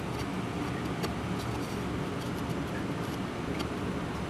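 Steady low mechanical hum of a running motor or fan, with a few faint light taps as wooden pieces are set on a plywood panel.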